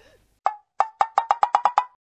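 Percussive sound effect: about nine short, pitched knocks starting about half a second in, coming faster and faster, and ending just before the end.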